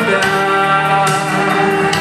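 A young woman singing a pop song into a microphone over a recorded backing track with guitar, through a PA.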